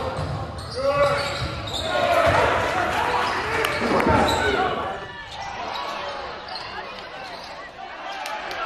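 A basketball dribbling on a hardwood gym floor, the bounces plainest in the first half, under shouting voices of players and spectators in a large, echoing gym.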